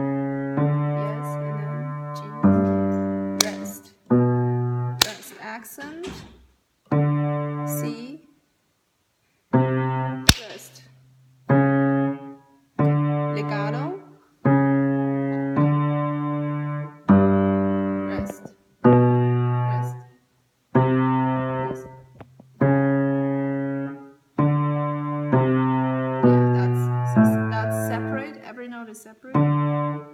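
Piano played slowly: single low notes and chords struck about once a second, each left to ring and fade, with a short break partway through.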